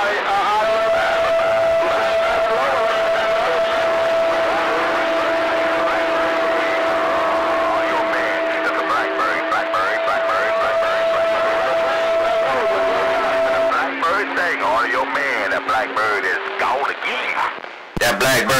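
CB radio receiver audio on channel 26 with stations talking over one another: a steady high whistle tone held for about thirteen seconds, lower steady tones joining and dropping out, over garbled, wavering voices that grow busier near the end.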